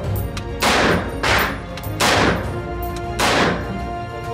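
DSA SA58 semi-automatic rifle in 7.62×51 mm NATO fired four times at an uneven pace, each shot echoing off the walls of an indoor range. Background music plays underneath.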